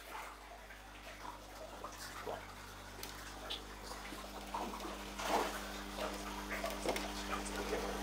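Large aquarium fish (cichlids and a red arowana) snapping floating dry-food pellets at the water surface: scattered small splashes and clicks that come more often from about two seconds in, over a steady low hum.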